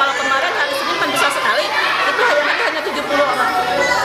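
Many children talking over one another at once, a dense steady babble of young voices with no single speaker standing out.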